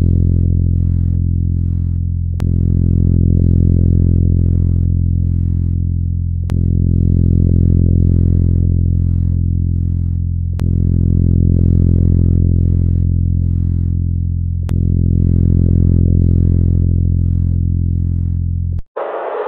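A sonification of the Kepler space telescope's light curve of star KIC 7671081 B: a loud, low, steady hum rich in overtones. It swells and fades in repeating cycles about four seconds long, each restarting with a slight click, under a faint hiss that flutters about twice a second.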